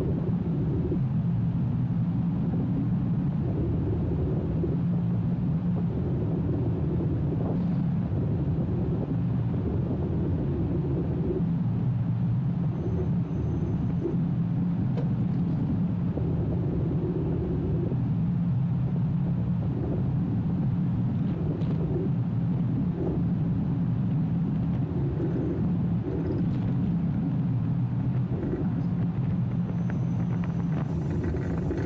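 Roller coaster train running along its steel track, a steady low rumble of wheels on the rails with occasional small clacks.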